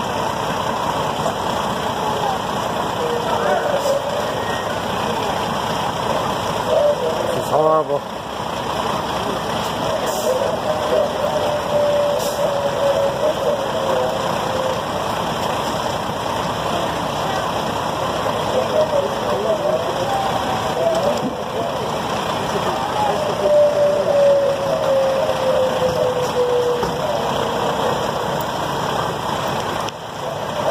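Fire engine idling steadily close by.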